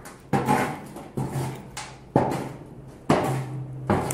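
Hardwood lump mesquite coals being pushed and scraped across a metal fire table with a rebar poker, closer around a cast iron Dutch oven. About five sharp scrapes and knocks come roughly one a second.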